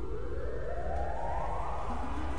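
A rising whoosh sound effect: a rushing noise sweeping steadily upward in pitch, over a low bass drone from the intro music.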